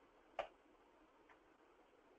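Near silence, broken by one short, faint click about half a second in.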